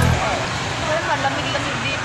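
Supermarket ambience: a steady hum of background noise with faint, indistinct voices of shoppers. Music cuts off right at the start.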